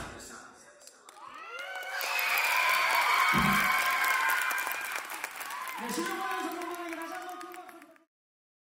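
Music cuts off, and about a second later an audience breaks into cheering, with high-pitched shouts and screams over applause; it swells, then fades out near the end.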